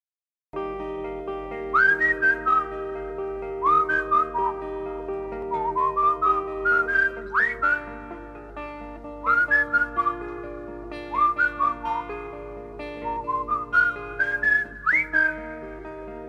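Whistled pop melody in short phrases that swoop up into their opening notes, over a steady instrumental backing, from a 1967 novelty instrumental; it starts about half a second in.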